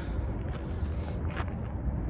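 Wind buffeting the phone's microphone in an uneven low rumble, with a faint brief rustle about a second and a half in.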